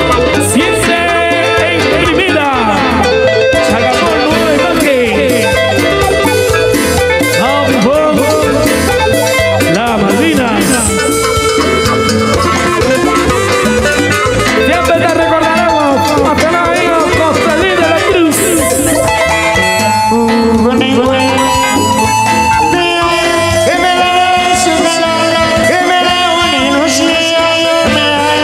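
Cumbia band music: an instrumental passage with a lead melody of sliding, bending notes over a steady beat.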